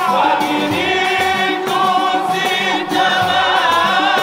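Group of men singing a devotional maulid chant in chorus through microphones, over a steady frame-drum beat.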